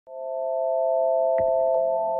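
Electronic drone of three steady pure tones held together as a chord, swelling in at the start, with two short high bleeps near the end.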